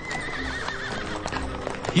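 A carriage horse whinnying: one long wavering neigh that falls in pitch over about the first second, with music underneath.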